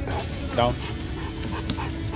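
A handler's spoken 'down' command to a young German Shepherd, with a few short, high whimpers from the dog.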